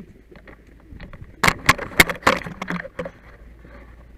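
A quick cluster of sharp clicks and knocks close to the microphone, from about a second and a half in to three seconds in: a firefighter's gear and equipment being handled and bumped.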